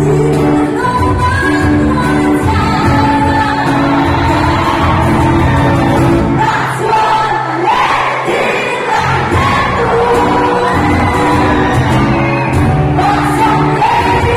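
Live band playing a song in a large, echoing hall: a lead vocal over strummed acoustic guitars, bass and drums. The low end drops away for a few seconds in the middle, then the full band comes back in.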